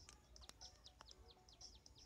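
Near silence, with faint short high chirps repeating throughout and two faint clicks, about half a second and a second in.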